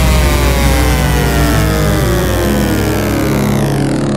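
Electronic dance music from a DJ mix: a held deep bass under a synth sweep that glides steadily down in pitch, its top end filtered away near the end, like an engine winding down.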